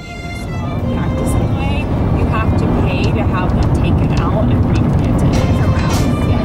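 Steady road and wind rumble from a moving car, fading in over the first second or two, with faint music and indistinct voices underneath.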